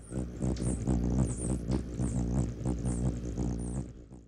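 Hummingbird wings humming in a low, steady buzz, with quick, high chirps repeating above it; the sound swells in and fades away again near the end.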